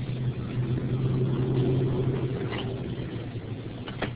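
A steady low hum with background hiss that swells slightly in the middle, with a few faint clicks.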